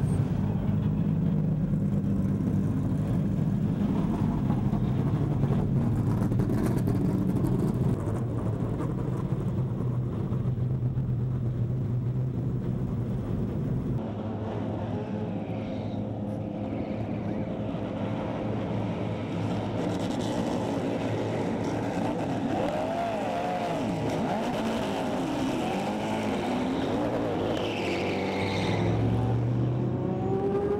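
Race car engines idling steadily on the starting grid. About halfway through, several cars rev and pull away past the camera, their engine pitch rising and falling as they go by.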